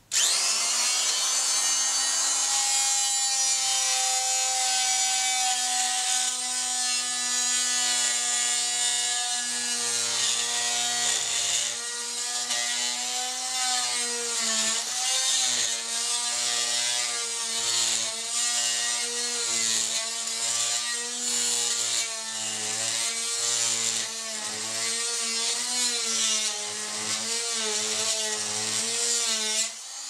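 Budget oscillating multi-tool switched on and plunge-cutting into a wooden board. It runs with a steady pitched hum, then from about ten seconds in the pitch wavers up and down as the blade loads and unloads in the wood. It cuts, but noticeably less well than the dearer machines.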